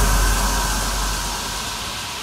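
An electronic white-noise hiss, the tail of the final track after the beat has cut, fading slowly and steadily.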